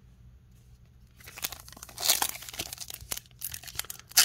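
A Tim Hortons hockey trading-card pack's wrapper being crinkled and torn open by hand, starting about a second in, an irregular crackle with sharp rips.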